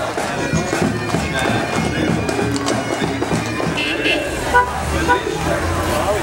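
A bagpipe band playing in a street parade, mixed with crowd voices. Two short, louder knocks come about three-quarters of the way through.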